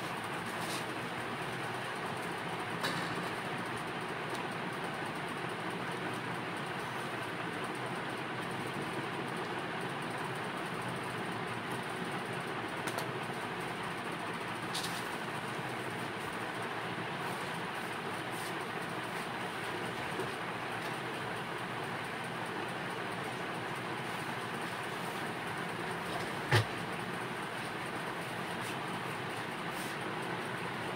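Steady background noise, an even hiss and hum, with a few faint clicks and one sharp click late on.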